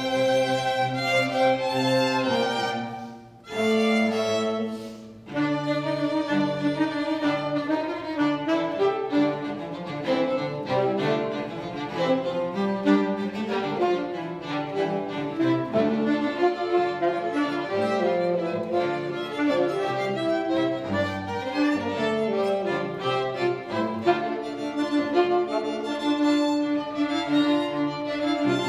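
Small chamber ensemble of violins, cello and saxophone playing: held chords, broken by two short pauses about three and five seconds in, then a busy, quicker-moving passage.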